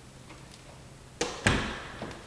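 Two sharp knocks about a third of a second apart, the second a heavier thud, over quiet room tone.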